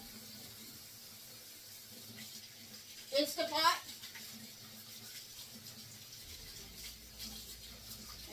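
Faint water running at a kitchen sink with light scrubbing and handling ticks as whole beets are washed by hand. A short spoken word or vocal sound cuts in about three seconds in.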